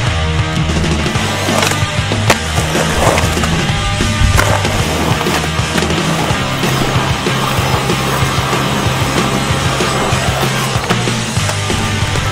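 Skateboard on concrete pavement: wheels rolling with a few sharp knocks from the board popping and landing. A rock track with a steady bass line plays over it.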